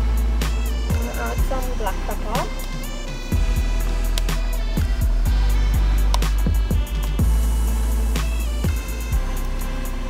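Background music with a deep bass line and a steady drum beat.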